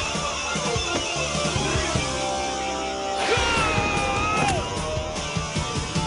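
Hard-rock background music with electric guitar. A prominent held note slides up about three seconds in and drops away about a second later.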